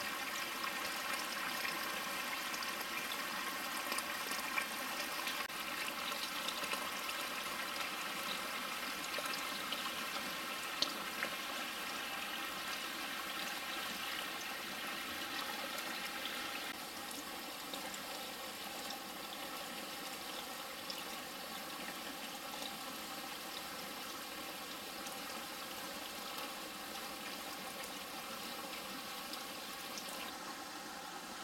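Spring water running steadily in a small trickling flow. It gets a little quieter a bit over halfway through, with a couple of faint ticks in the first half.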